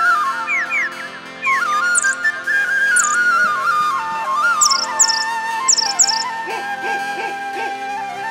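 A slow flute melody over held background tones, its line stepping gradually lower, with short high chirping whistles scattered above it, several in quick pairs about five seconds in.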